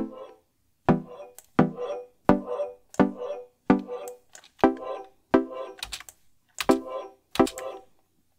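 A Serum saw-wave pluck melody playing through the Fruity Convolver, with a knife sound effect used as the reverb impulse. About a dozen short notes sound, each starting with a sharp click and ringing off, with brief gaps between them.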